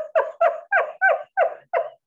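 A man laughing heartily in a steady run of short 'ha' pulses, about four a second.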